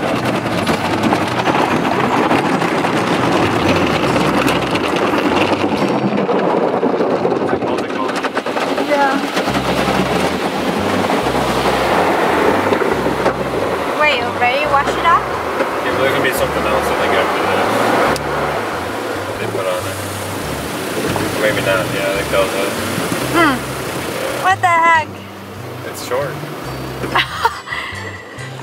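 Automatic car wash heard from inside the car: a steady rush of water spray and brushes working over the body and windshield. From about ten seconds in, music with a stepping bass line plays along, and short high squeals come through a few times near the end.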